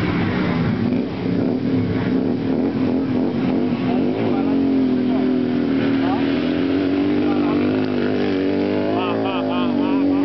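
A motorcycle engine running steadily, with people talking over it.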